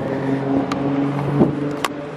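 A motor vehicle engine running with a steady hum in street traffic, punctuated by three sharp clicks.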